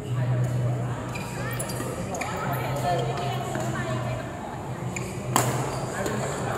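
Badminton rally in a large, echoing indoor hall: sharp racket strikes on the shuttlecock, the loudest about five and a half seconds in, over a steady low hum, with voices on court.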